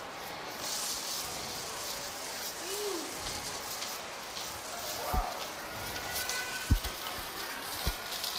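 Steady background hiss of a shopping mall, with a few soft low thumps in the second half as plastic hula hoops drop to the carpeted floor.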